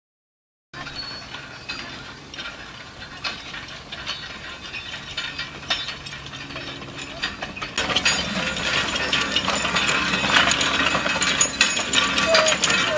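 Metal ox-drawn farm implement, a forecart with a bladed roller weeder, rattling and clanking in a dense run of clicks as it is pulled across the field. It grows louder and busier about eight seconds in.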